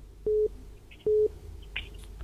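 Two short telephone beeps at the same pitch, about a second apart, coming down the phone-in line: a busy tone, the sign that the caller's line has dropped.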